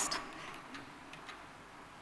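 Low background hiss on a video-call microphone, with a few faint, irregular clicks.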